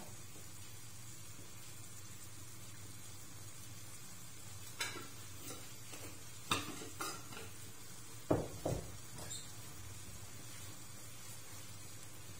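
A few short knocks and clicks of kitchen things being handled and set down, as dried thyme goes onto shrimp in a frying pan, over a faint steady hum. The knocks come singly about halfway through, with a closer pair a little later.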